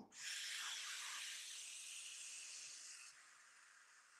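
A man's long, deep breath blown out through pursed lips, a faint steady hiss that fades away after about three seconds.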